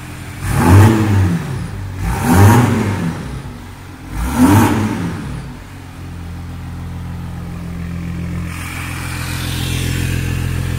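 VW Amarok V6 turbodiesel with a downpipe and straight-through 4-inch exhaust, revved in three quick blips that rise and fall. It then settles to a steady idle.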